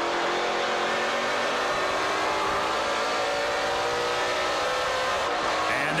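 V8 engine of a NASCAR Pinty's Series stock car, heard from the in-car camera at racing speed, its note rising slowly as the car accelerates. The engine sound changes abruptly a little after five seconds in.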